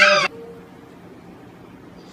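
A high-pitched, wavering cry breaks off just after the start, leaving a faint steady hum.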